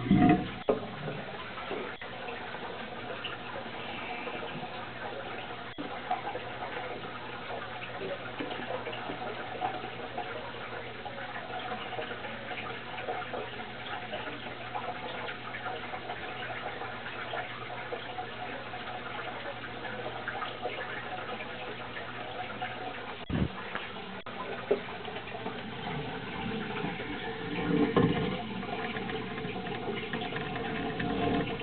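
Steady splashing and trickling of water in a turtle tank over a low steady hum, with a handling bump right at the start and a single sharp knock about 23 seconds in.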